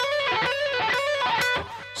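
Electric guitar playing a fast legato run, a figure of quick hammered-on and pulled-off notes repeated about twice a second. It stops about three quarters of the way through.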